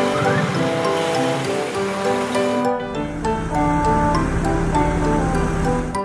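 Background music from a children's cartoon, with an even hiss-like noise under it for roughly the first half and a low rumble through the second half.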